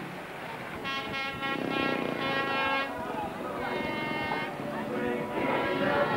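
Speedway motorcycle engines, 500 cc single-cylinder, running in the pits and held at steady revs in spells of a second or two, with voices in the background.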